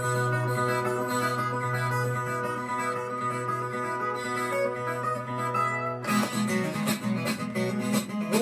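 Viola caipira, the Brazilian ten-string folk guitar, playing an instrumental break in a moda de viola, with plucked notes ringing over a low bass. About six seconds in the sound turns suddenly brighter and denser.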